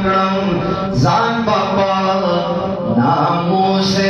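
A man reciting a Pashto naat solo into a microphone: one voice holding long, steady notes that bend slowly from pitch to pitch, with short hissed consonants about a second in and near the end.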